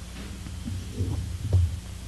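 Steady low electrical hum from the microphone system, with two brief low muffled thumps about a second in and half a second later.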